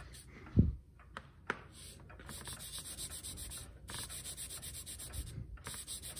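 Cotton ball rubbing silver chloride paste into a brass clock dial, a steady rubbing in small repeated strokes as the crystals are worked into the brass to silver it. There is a soft low thump about half a second in, and a couple of small clicks.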